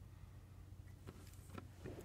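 Near silence: room tone with a low steady hum and a few faint clicks.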